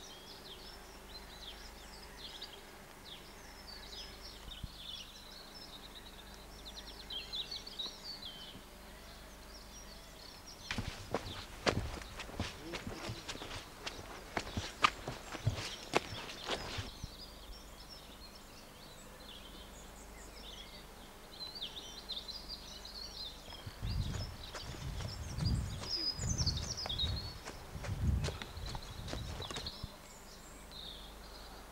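Small birds singing in woodland. About eleven seconds in, a quick run of footsteps and knocks from a handheld camcorder being carried at a run lasts about six seconds. Near the end come several low rumbling thumps.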